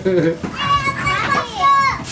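Children's voices: after some brief talk, a young child's very high-pitched call or squeal holds through the middle and falls away at the end.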